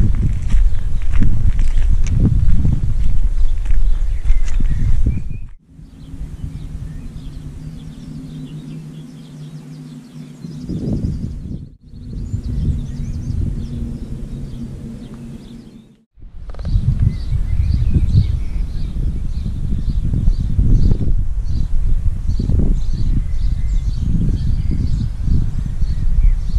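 Uneven low rumble of a slowly moving vehicle and wind on the microphone, broken by two abrupt cuts. The middle stretch is quieter, with a steady low hum. Short bird chirps sound over the rumble in the last part.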